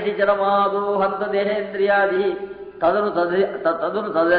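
A man chanting a devotional verse in a near-monotone, holding an almost steady pitch, with a brief break for breath just before three seconds in.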